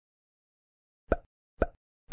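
Two short, sudden pop sound effects about half a second apart, starting about a second in: cartoon plops marking animated bullet-point stars appearing.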